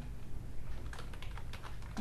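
Computer keyboard typing: a short run of light keystrokes starting about half a second in.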